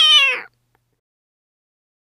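A cat's single loud meow, falling in pitch and ending about half a second in.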